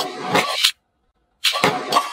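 Electronic sound effect from a battery-operated toy gun: a rapid, buzzing rattle that cuts off sharply about three-quarters of a second in, then starts again about half a second later.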